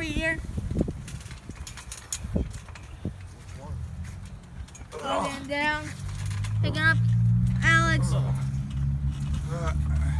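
A few soft thumps and knocks on a backyard trampoline mat, then short shouts from the boys. From about six seconds in there is a low steady rumble under them.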